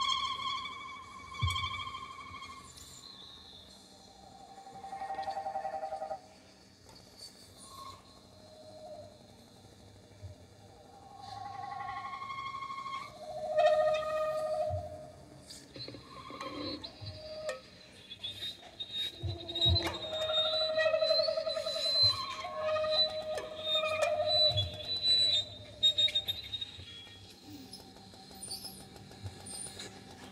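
Saxophone and bowed violin in a sparse free improvisation: long held notes separated by pauses. The playing grows busier and louder in the second half, with one note in a wide vibrato and a thin high tone held above it.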